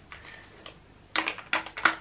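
A few light clicks and taps from a pen being fitted into a small desk pen holder, bunched together in the second half.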